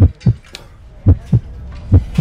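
Deep, low thumps in pairs like a heartbeat, about one pair a second, over a low hum.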